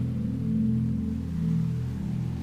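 Ambient music: slow, sustained low drone chords that swell and fade gently, with no beat.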